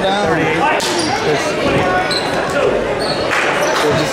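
Basketball bouncing on a hardwood gym floor, a few sharp bounces ringing in a large hall, with people's voices over it early on.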